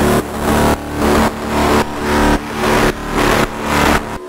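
Layered FM synth bass of an EBM track at 111 BPM, heavily crushed and distorted through bitcrusher, saturation and amp effects, with a hard hit on each beat, about twice a second.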